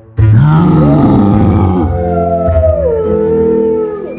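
A wolf howling: it starts suddenly with a rougher, louder cry, then settles into one long call that slides slowly down in pitch. Eerie background music runs underneath.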